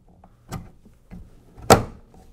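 Plastic steering mount base knocking against the kayak's H-rail as it is pushed over it: a light click about half a second in and a sharper, louder knock near the end.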